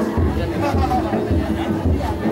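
Live bantengan troupe music: a deep drum beating about twice a second under steady held tones, with a crowd chattering over it.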